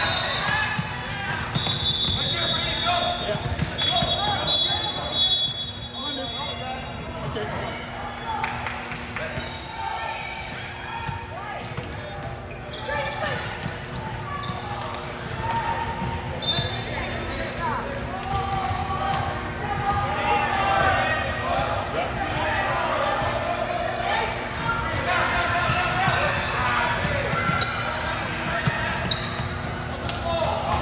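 Indoor youth basketball game: a basketball dribbling and bouncing on a hardwood court, with brief high squeaks of sneakers on the floor, amid echoing voices of players and spectators in a large gym.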